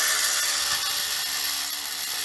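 Battery-powered gyroscope flywheel of a Tightrope Walking Gyrobot toy spinning at near full speed, a steady high whirring from its small motor and gear train.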